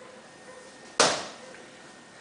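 A single sharp smack of a boxing glove landing a punch about halfway through, fading out over about half a second.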